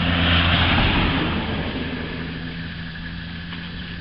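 A motor vehicle's engine, loudest in the first second and then slowly fading, as if passing by, over a steady low hum.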